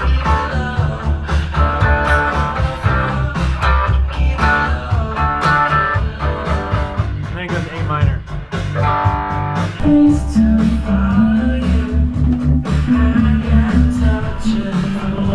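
Indie rock music: electric guitar over bass and synth with a steady drum beat, from the band playing along to a recorded backing track.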